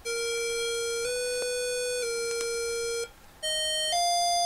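Sustained, perfectly steady electronic instrument tones with small steps in pitch: a held note that shifts slightly twice, breaks off about three seconds in, then a higher note that steps up and is held. This is the accompaniment introduction that sets the pitch before a shigin chant.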